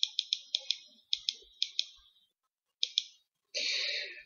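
Light computer clicks, a quick run of about six a second at first, then spaced pairs, as moves are stepped back in a chess program. A brief soft hiss comes near the end.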